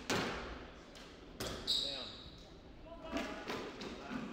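Squash ball struck by rackets and hitting the court walls: sharp, echoing cracks just after the start and again about a second and a half later. A high squeak of a shoe on the wooden court floor follows the second crack and lasts about half a second.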